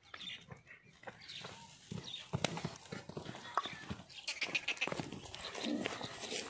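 A Kota goat buck moving about on dry dirt and straw on a lead rope: scattered hoof steps, knocks and scuffs.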